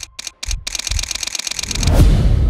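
Edited transition sound effect: a few sharp separate clicks, then a fast dense run of ticks over low thumps that swells into a whoosh near the end.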